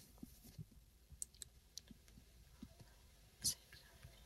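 Faint scattered clicks and light rustles of a book being handled, its pages and cover shifting in the hands, with one slightly louder short rustle about three and a half seconds in.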